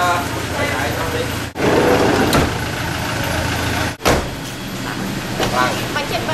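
A motor vehicle's engine idling with a steady low hum, with people talking over it. The sound cuts out abruptly twice, about a second and a half in and again about four seconds in.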